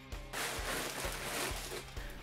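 Scissors slicing through the cardboard box's seal, a steady rasping noise lasting a little over a second, over quiet background music.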